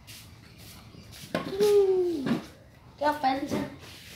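A child's voice: a drawn-out call falling in pitch about a second and a half in, then a short utterance about three seconds in.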